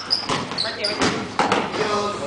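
A few sharp thuds on a hard floor in a large room, spaced irregularly, with short high squeaks in the first second and voices in the background.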